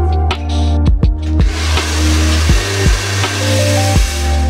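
Background electronic music with a steady beat, with a hand-held hair dryer of about 1800 watts blowing over it from about a second and a half in.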